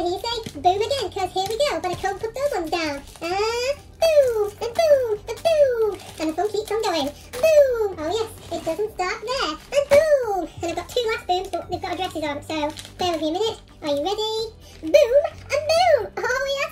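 A high-pitched, child-like voice babbling in a sing-song way without clear words, its pitch sweeping up and down the whole time.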